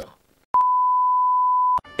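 Electronic beep: one steady, single-pitched tone held for about a second and a quarter, switched on and off abruptly with a click at each end, after a brief silence.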